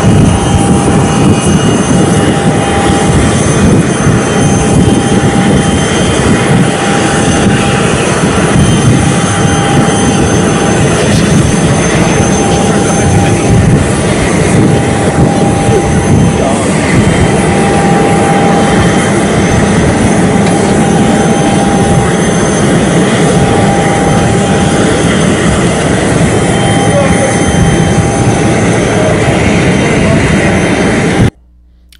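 Business jet's turbofan engines running on the ground: a loud, steady rush with a constant whine through it.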